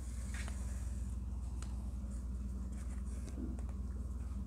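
Faint rustling and a few light ticks of hands working yarn and a needle through a crocheted amigurumi piece, over a steady low hum.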